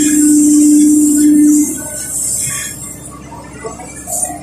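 Kobelco SK140 excavator working, its Mitsubishi diesel running under load while the bucket digs into mud. A loud steady hydraulic whine holds as the bucket pulls through the ground and stops just under two seconds in, leaving the engine's running hiss.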